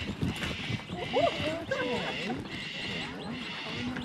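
Kangaroos hopping over dry dirt: a run of soft thumps, with people's voices in the background.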